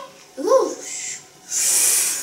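A woman's short voiced sound, rising and falling in pitch, then a steady hiss of nearly a second, like a mouth-made 'sss' sound effect for the pot over the fire.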